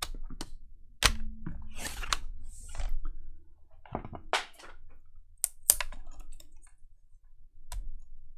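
Clicks and knocks of a Dell Latitude E6440 laptop's plastic and metal chassis being handled: the closed laptop is turned over on the desk, and hands then work inside its open base. A few of the knocks are sharper than the rest, near the start, in the middle and near the end.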